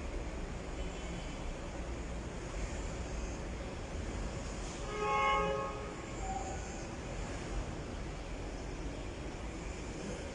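A single horn blast of about a second, about halfway through, over a steady low rumble.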